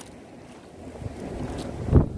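Wind buffeting the microphone over sea water lapping around a small outrigger boat, growing louder about a second in and ending in a low thump.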